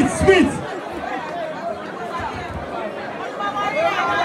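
Many people talking at once in a crowd, with one voice rising louder near the start.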